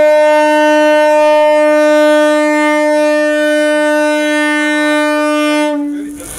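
Ship's horn sounding one long, steady blast that cuts off shortly before the end.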